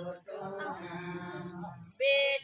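A group of women singing a traditional wedding folk song together, in long held notes, with a short break for breath just after the start.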